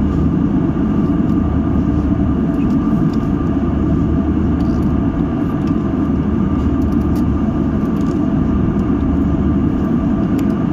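Cabin noise of an Airbus A320-family jet airliner in flight: a steady, even low roar with faint steady hum tones riding above it.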